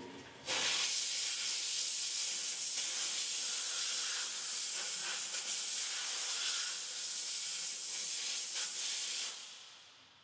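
Compressed-air blow gun hissing steadily as it blows metal chips off a freshly machined part in a mill vise. The blast starts sharply about half a second in and stops shortly before the end.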